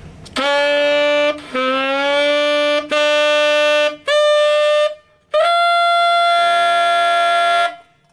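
Tenor saxophone played with an unusual altissimo G fingering: five held tones stepping up from a low partial to the high G by overtone control. The last, longest tone opens into a multiphonic, with extra lower tones sounding beneath the G.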